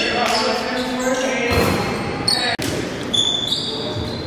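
Basketball bouncing on a gym floor among several players' voices, echoing in a large gymnasium, with a brief break about two and a half seconds in.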